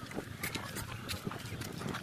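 Footsteps crunching on sandy, gravelly ground while walking, an uneven run of short scuffs and crunches.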